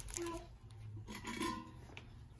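Faint rustling and handling noise as items are moved about and a fabric shopping tote is rummaged through, over a low steady hum.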